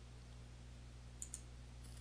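A computer mouse button clicked once: two short sharp ticks about a tenth of a second apart, the press and release, over a faint steady low hum.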